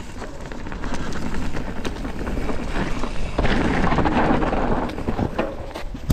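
Mountain bike riding down a dirt woodland trail, heard from a camera on the rider: a heavy rumble of wind on the microphone and tyres rolling over leaves and dirt, with scattered knocks and rattles from bumps in the trail. It builds from about a second in and is loudest in the second half.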